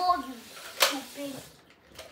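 A child's voice speaking briefly, with one sharp click a little under a second in.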